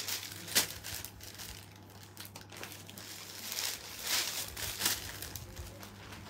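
Plastic garment bags crinkling and rustling as they are handled and unwrapped, in irregular bursts with a few sharper crackles, over a faint steady low hum.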